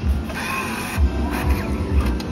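A slot machine's bill acceptor pulling in a banknote with a short motorised whirr, over casino background music with a steady beat.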